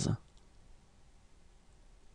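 A voice finishing the spoken French number "soixante-quinze" in the first instant, then near silence with faint room tone.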